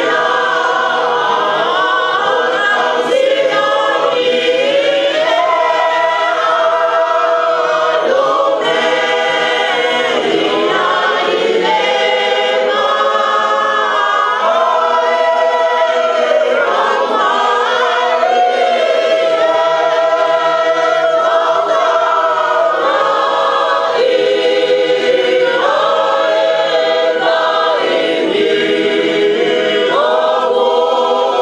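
Tongan congregation singing a hymn together in several parts, with long held notes that shift every second or two.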